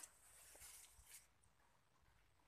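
Near silence: faint outdoor background noise, with a soft high hiss in the first second.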